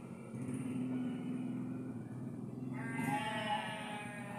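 An animal bleating once: a wavering, high-pitched call lasting under a second, about three seconds in. A low steady hum runs through the first half.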